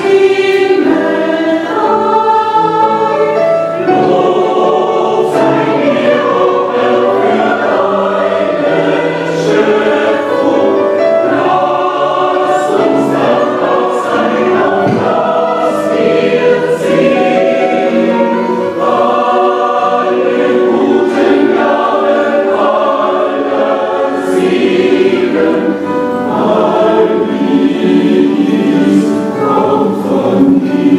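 Adult mixed choir and children's choir singing a choral song together in German, continuously and without a pause.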